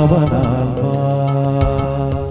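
Devotional praise chant music: a wavering sung melody line in the first moments, then long held notes over a light, steady percussion beat.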